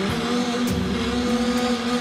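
Dramatic background music under a reaction shot: steady held low tones beneath a rushing, noisy swell.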